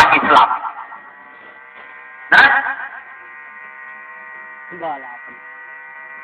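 Steady electrical hum with several held tones at once, running through a pause in a man's talk; a short loud vocal sound breaks in about two seconds in, and a faint voice is heard briefly near five seconds.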